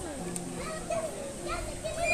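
A group of young children playing, their voices chattering and calling out in the background.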